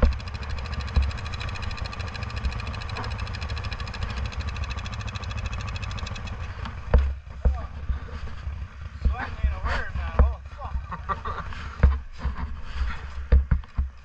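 Yamaha Grizzly 660 ATV engine running steadily under way on the trail. About seven seconds in, the steady engine note drops away as the quads pull up. After that there are scattered knocks and low thumps, with faint voices.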